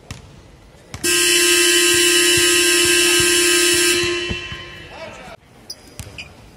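Arena basketball horn sounding one long, loud, steady blast of about three seconds, starting about a second in and then dying away. Basketballs bounce on the hardwood court beneath it.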